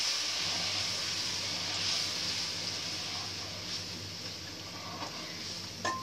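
Sugar syrup (chashni) poured into hot ghee-roasted semolina in a kadhai, sizzling and steaming with a steady hiss that slowly dies down. A single clink near the end.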